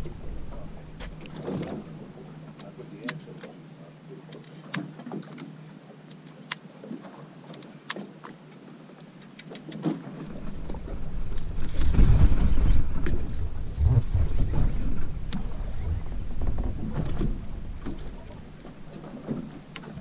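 Water lapping and splashing against the hull of a drifting fishing boat, with scattered small clicks. About halfway through, a low rumble of wind on the microphone comes in, loudest a couple of seconds later.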